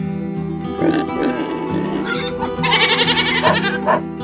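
Children's cartoon background music, with cartoon vocal sound effects over it: a rough, grunting sound about a second in and a higher vocal sound later on.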